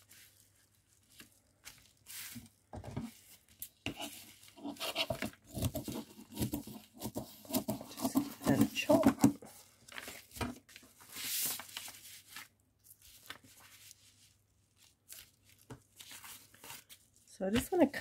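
A large paper envelope and plastic bubble wrap being handled, smoothed and crinkled on a cutting mat, in irregular rustles and crackles, with a longer hissing rustle about eleven seconds in.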